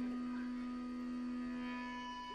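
The band stops abruptly, leaving a single steady note ringing on, held evenly through a break in the song.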